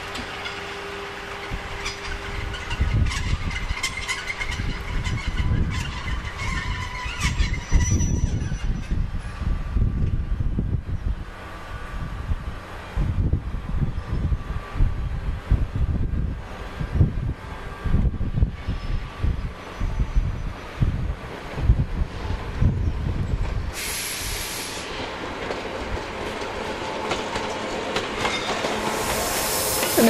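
An Intercity train hauled by an NS 1600-class electric locomotive rolling over station pointwork, its wheels thumping irregularly over rail joints and switches, with a thin wheel squeal in the first seconds. The thumping stops about three quarters of the way through, and a hiss rises as the locomotive draws close near the end.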